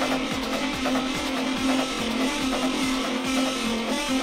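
Hard techno track in a continuous DJ mix: a kick drum beats a little over twice a second under a steady droning tone and busy higher synth textures.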